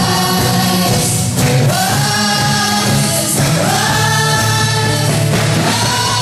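Live gospel worship music: a group of voices, mostly women, singing together in long held notes over a band of keyboard, guitars and drums.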